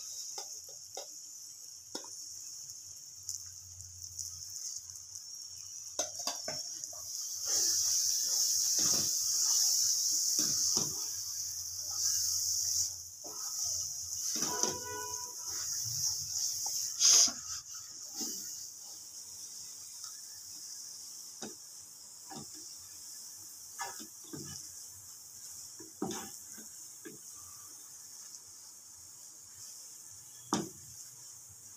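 Olive pickle mixture sizzling in a pan as it is stirred, with a spoon clicking and scraping against the pan now and then. The sizzle is loudest for several seconds in the middle, and there is one sharper knock a little later.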